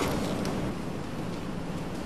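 A short click right at the start, then steady, even background hiss with no distinct event.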